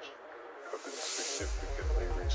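Electronic dance music from a DJ mix: a breakdown with the bass filtered out, a short rush of high hiss, then the kick drum and bass dropping back in about one and a half seconds in, with a steady beat after that.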